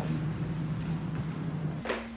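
Outdoor city ambience: a steady low hum of distant traffic that cuts off suddenly with a click near the end.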